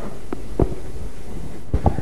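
Handling noise from a clip-on lapel microphone being fastened to a sweater: a few dull thumps and rubs over a steady low hum.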